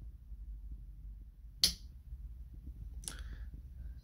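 Rocker switch on a wall-mounted switch panel clicking twice, about a second and a half apart, as a light is switched, over a faint low hum.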